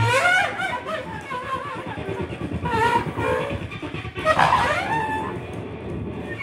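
Free-improvised duet of bowed cello and a large low reed instrument: sliding, squealing high pitches that rise and fall, over a scratchy, rasping low texture.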